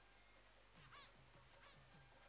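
Near silence, with two faint short calls, one about a second in and another shortly after.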